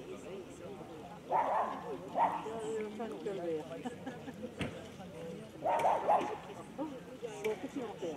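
A dog barking: short barks about a second and a half in, once more just after, and again near six seconds, over the chatter of people talking.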